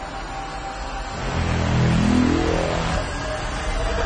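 Cinematic intro sound effect: a low rising whoosh that swells from about a second in and sweeps upward in pitch, easing off about three seconds in.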